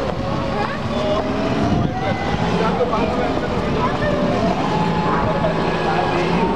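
A steady, low engine rumble, with people talking indistinctly over it.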